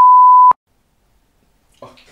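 Electronic test-tone beep, one steady pure tone that cuts off sharply about half a second in, followed by dead silence; a man's voice says "Oh" near the end.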